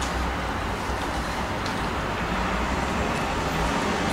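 Steady background noise, a hiss with a low rumble under it, holding level throughout, with a few faint ticks.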